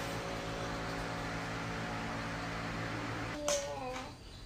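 A steady mechanical hum made of several even tones, which cuts off suddenly about three seconds in. A brief voice follows near the end.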